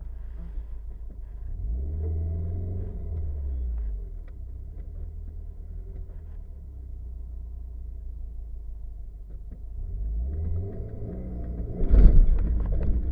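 Subaru Impreza WRX STI's turbocharged flat-four boxer engine, heard from inside the cabin, running low and steady. The revs rise briefly about two seconds in, then rise again near the end.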